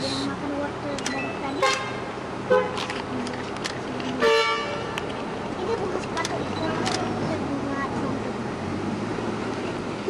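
A car horn toots once, briefly, about four seconds in, over low background chatter and vehicle noise.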